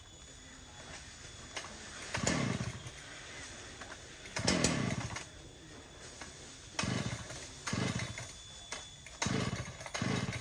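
Husqvarna 395 XP two-stroke chainsaw being pull-started: about five short bursts of the engine turning over, each falling away within half a second, without the saw settling into a steady run.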